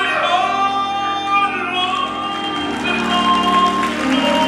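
Male gospel soloist singing with full voice into a microphone over a live church band. The backing grows fuller a little past halfway.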